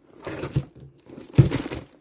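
Plastic packaging crinkling as a handbag is moved about in its wrapping in a cardboard box, in two bursts, the second, about halfway through, the louder.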